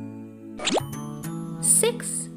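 Gentle children's background music with a quick rising 'plop'-like sound effect about half a second in, then a bright shimmering sparkle effect with a falling wobble near the end, the loudest moment.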